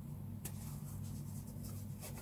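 Soft rubbing and scratching of a crochet hook drawing T-shirt yarn through stitches, with a sharper tick about half a second in, over a steady low hum.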